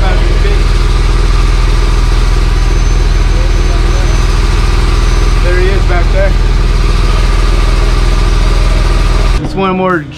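Deck-mounted gasoline-engine air compressor running steadily at constant speed, loud and close, feeding air to a diver below. It cuts off suddenly near the end.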